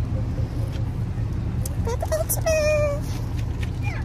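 Steady low outdoor rumble, with a brief high-pitched vocal sound about two and a half seconds in.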